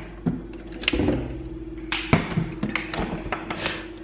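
Refrigerator door water dispenser running: a steady hum starting about half a second in, with a few knocks and clicks from the glass and the dispenser.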